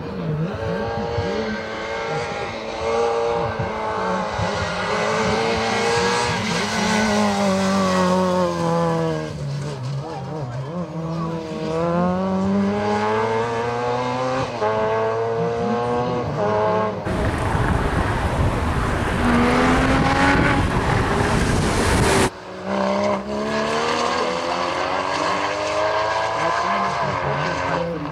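Racing car engines in a slalom, one car after another, revving up and dropping back as they accelerate, brake and change gear between the cones. Partway through there is a loud, even rushing noise for about five seconds that cuts off abruptly.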